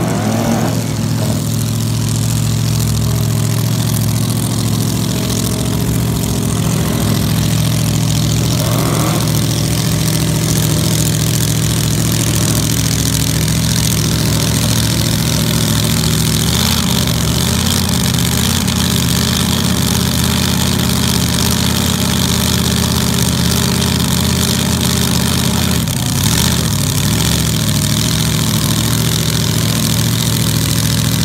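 Supercharged dragster engine running at a steady idle, close by.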